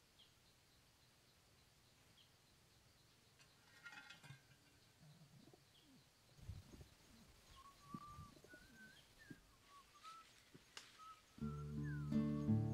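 Faint pigeon sounds at a pot-lid pit trap: a brief scuffle about four seconds in as the pigeon goes into the trap, then low cooing calls, with small birds chirping faintly throughout. Guitar music starts just before the end.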